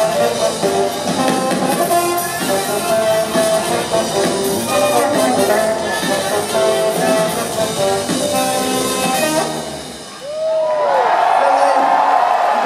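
Live funk band playing, with electric bass and a Rhodes electric piano. The song ends about ten seconds in, and the crowd breaks into loud cheering with a whistle.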